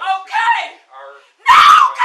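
A woman screaming and crying out words in distress, with a very loud scream from about one and a half seconds in.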